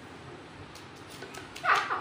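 A few faint taps, then near the end a short high-pitched yelp that falls in pitch.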